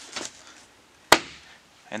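Plastic interior door trim panel being pushed onto a car door, with one sharp snap a little over a second in.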